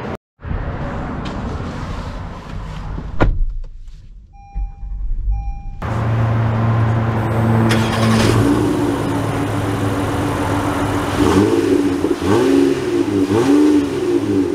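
A 2024 Honda Odyssey's 3.5-litre V6 starts about six seconds in, after a single thump and a short two-part electronic beep. It then runs steadily and is revved up and down several times near the end, heard from low beside the exhaust.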